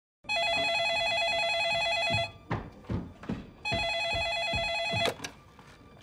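A corded landline telephone ringing twice, each ring a warbling electronic trill about two seconds long. A few soft thuds fall between the rings, and a sharp click comes near the end as the receiver is picked up.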